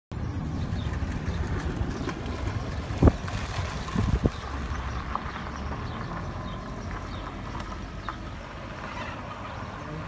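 Steady outdoor street noise, a low rumble and hiss with vehicle sound, over a rough potholed gravel street. Two sharp knocks stand out about three and four seconds in.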